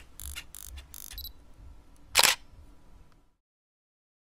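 Camera shutter clicks: four quick shutter releases in a row, then one louder shutter sound about two seconds in. The sound cuts off suddenly after about three seconds.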